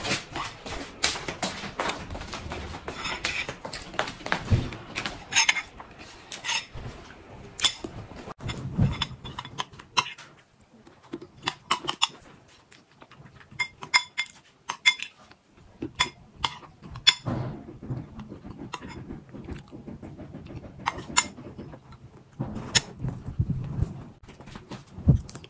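A spoon clinking and scraping against a bowl in scattered short clicks, with chewing of yogurt and crunchy granola. Near the end there is a brief stretch of rustling.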